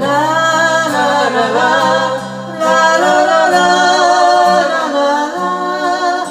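A woman singing long, held notes into a microphone, with a slight vibrato, in two sustained phrases split by a short breath about halfway through. A steady low accompaniment, from the acoustic guitar, runs under the voice.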